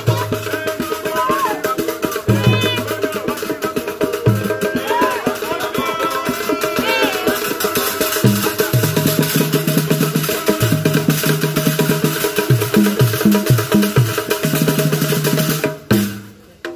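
Live African hand-drum ensemble playing a fast dance rhythm, with rattles and sharp wood-block-like clicks, and high gliding calls over it in the first half. The music stops abruptly just before the end.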